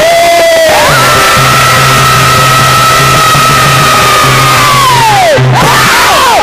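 A male singer holds one long, high note for about four seconds over the group's accompaniment, then lets it glide down near the end, in a heroic devotional folk song.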